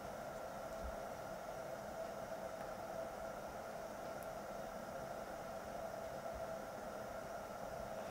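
Faint steady hiss with a low steady hum: background room tone with no distinct event.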